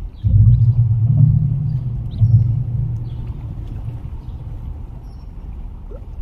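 A loud low rumble that sets in suddenly just after the start, strongest for the first two and a half seconds, then fades slowly.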